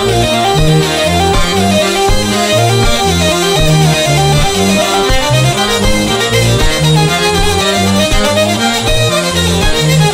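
Hurdy-gurdy and chromatic button accordion (bayan) playing a three-time bourrée together: a melody line over the accordion's rhythmic bass notes, in a steady dance beat.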